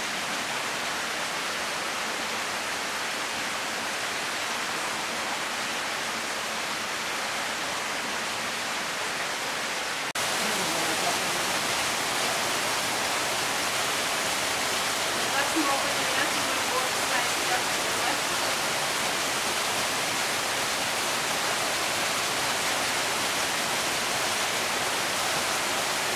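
Steady rushing of running water, an even noise that fills the whole range, stepping up in level about ten seconds in.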